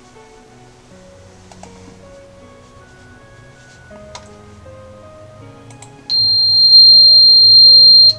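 Soft background music, then about six seconds in a loud, steady high tone at the note C8 (about 4,186 Hz, the top note of an 88-key piano) starts suddenly, holds for about two seconds and cuts off.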